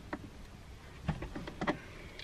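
A few light clicks and scrapes of a hand screwdriver working at a screw in the plastic A-pillar trim, the tip not turning the screw.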